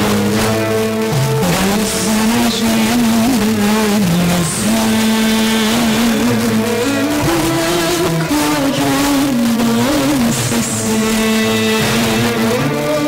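Music playing over an FM car radio tuned to 88.8 MHz, a distant station received over several hundred kilometres: a wavering melody line over a held accompaniment.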